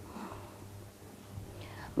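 A pause in a talk: faint room tone with a low steady hum, and a faint, short voice sound near the end, just before speech resumes.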